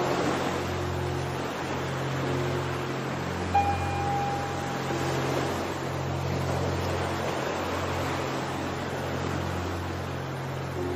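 Ocean surf washing steadily, mixed with soft music of low held notes. A brief higher note sounds about three and a half seconds in.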